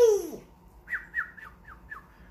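Cockatiel chirping: a quick run of about five short, falling chirps in the second half, roughly four a second. Before it, at the very start, comes a short, falling vocal sound from the laughing man, the loudest thing heard.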